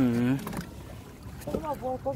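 A man's voice: a drawn-out exclamation, its pitch dipping and rising, at the very start, then speech near the end.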